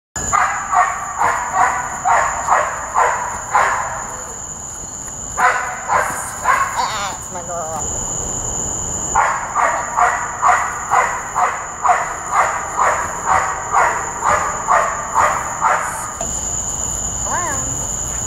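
A dog barking in rapid strings of about two barks a second, in three bouts, the longest lasting about seven seconds. Under it runs the steady high drone of insects.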